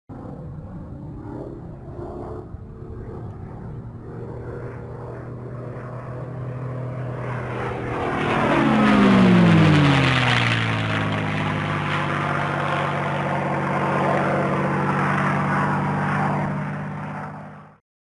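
A steady, engine-like drone whose pitch falls about eight seconds in as it swells to its loudest, then holds steady and fades out just before the end.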